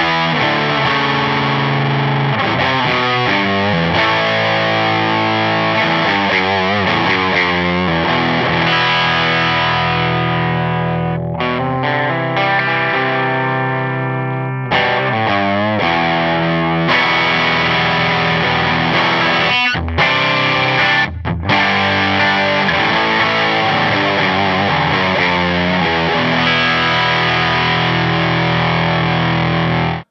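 Electric guitar (a gold-top Les Paul) played with heavy overdrive through an EarthQuaker Devices Blumes bass overdrive, which lets through a big low end with pushed mids. It plays sustained distorted chords and wavering, bent notes, with a few short breaks in the second half, and cuts off abruptly at the end.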